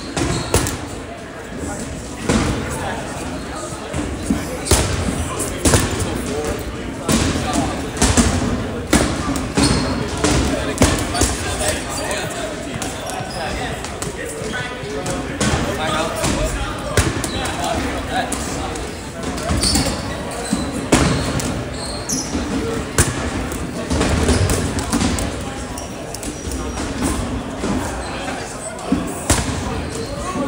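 Balls bouncing and smacking on a hardwood gym floor at irregular intervals, echoing in a large hall, over indistinct chatter of players.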